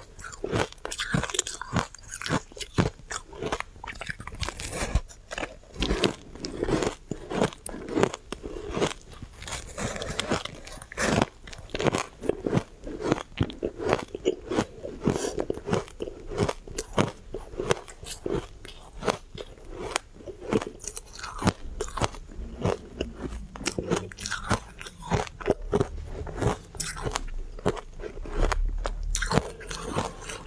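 Refrozen shaved ice coated in matcha powder being bitten and chewed close to the microphone: a dense, continuous run of sharp crunches, several a second.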